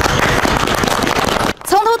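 Dense rushing noise from location footage, with no clear pitch and no distinct single bangs, cutting off abruptly about a second and a half in. A news narrator's voice starts right after.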